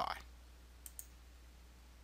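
Two faint computer mouse clicks a moment apart, about a second in, over near silence with a steady low hum; the clicks open an application menu.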